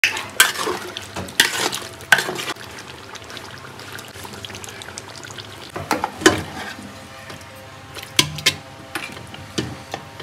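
Metal spoon stirring and scooping thick beef and potato curry in an aluminium pot: wet squelching of the curry, with sharp scrapes and clinks of the spoon against the metal pot several times.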